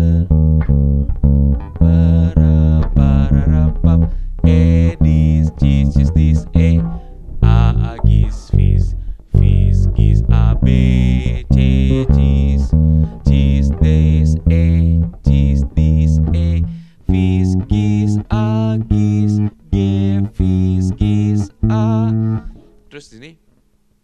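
Five-string Pedulla MVP5 electric bass playing the song's chorus bass line slowly, as a steady run of single plucked notes with strong low end.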